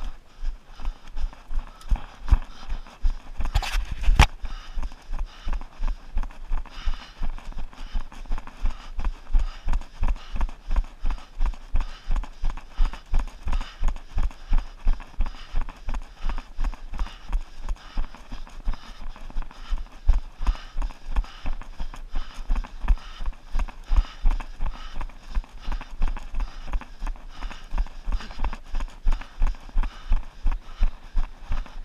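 A runner's footsteps picked up by a body-worn camera: steady, even thuds at about three strides a second, at race pace. A couple of sharper knocks come about four seconds in.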